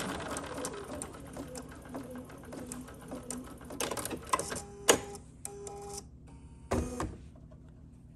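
Embroidery machine coming to the end of a stitch-out: the steady stitching at the start fades into scattered clicks and ticks, with two short motor whirs past the middle and a brief louder clatter near the end.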